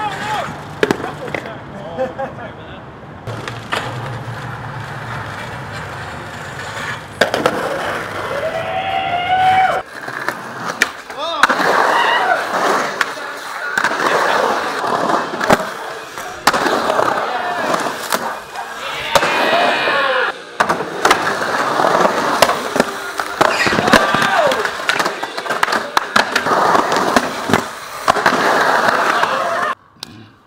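Skateboard wheels rolling on concrete, with sharp clacks and slaps of boards popping and landing. From about seven seconds in, people shout and cheer loudly over the skating.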